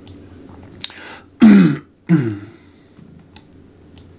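A man clearing his throat twice in quick succession a little past the middle, harsh and loud, the first burst the louder. A few faint clicks follow near the end.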